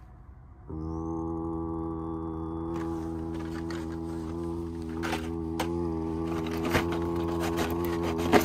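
A steady low hum at one fixed pitch sets in just under a second in and holds level. A few light clicks, typical of card packaging being handled, fall in the second half.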